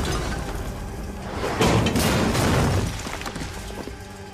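Explosion sound effect from an animated action scene: a sudden loud blast about a second and a half in that dies away over about a second, over background music.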